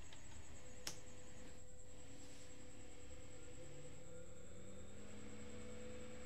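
Papst TYP 8550 N 230 V AC axial fan, 80 mm square, starting up on mains power: a single click about a second in, then a faint hum that rises slowly in pitch as the fan spins up. The quiet rush of air is normal running noise, not a fault.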